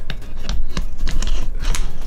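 Handling noise from a camera being moved by hand into a mount: rubbing and low bumps on the microphone, with several sharp clicks.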